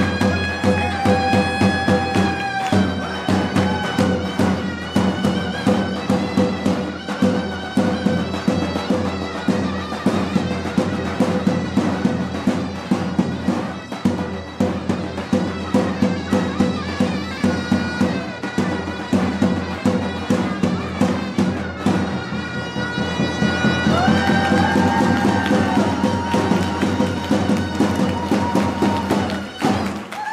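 Live Turkish davul and zurna music: a shrill double-reed zurna plays a melody over fast, steady beats of a large double-headed davul drum. Near the end the zurna holds long notes.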